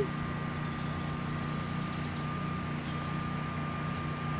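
Steady low hum of a vehicle engine running, with a faint steady high whine over it and no distinct events.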